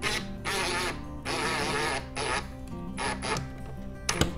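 Cordless impact driver on its lowest setting driving 1¼-inch pocket screws in about five short bursts, eased in gently to snug a shelf flush without splitting the apron. Background music with low steady notes runs underneath.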